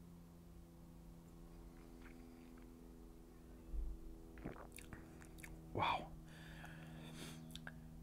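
Faint mouth sounds of a man tasting a sip of whisky: soft lip smacks and clicks, the most distinct about four and a half and six seconds in, over a steady low hum.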